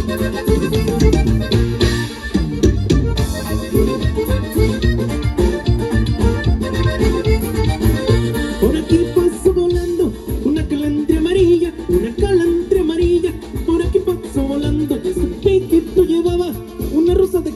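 Live norteño band playing a huapango for dancing: accordion melody over guitar, with a steady bass beat.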